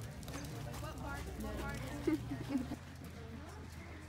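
Horses' hoofbeats on indoor arena footing, with indistinct voices and a low steady hum under them.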